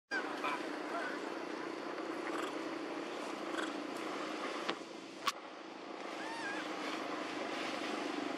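Steady outdoor background hum with a few short, high chirping calls and two sharp clicks about midway.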